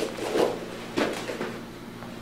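Two heavy thuds about half a second apart as bodies roll and land on foam grappling mats.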